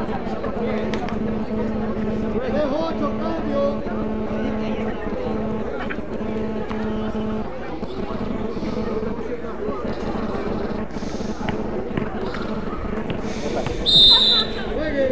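Background voices of players and spectators talking at an outdoor court, with a steady low hum that stops about halfway through. A short, loud, sharp sound comes just before the end.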